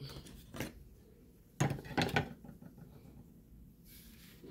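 A few short knocks and clatters of hard cast resin and cement figures being moved and set down on a countertop, the loudest about a second and a half in.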